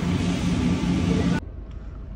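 Loud, noisy fast-food restaurant ambience with a steady low mechanical hum, cut off abruptly about one and a half seconds in and replaced by a quieter low car-cabin rumble.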